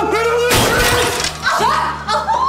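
A clear glass stand decorated with flowers is knocked over and shatters on the floor, a loud crash about half a second in, over dramatic background music.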